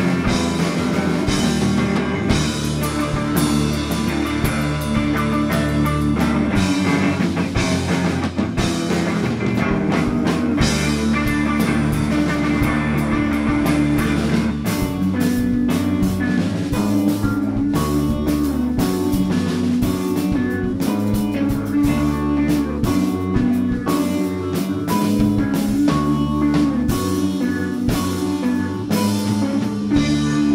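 Live rock band playing an instrumental passage: electric guitars, bass guitar and drum kit, with no vocals. The drums stand out more sharply in the second half.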